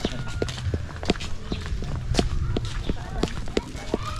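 Footsteps on packed dirt, a quick even tread of about three steps a second, over a low rumble.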